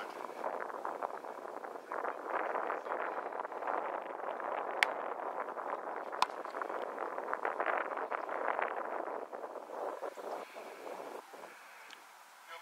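Wind rushing over the microphone, broken by two sharp smacks about a second and a half apart: a football snapped into a punter's hands, then his foot striking it on a punt.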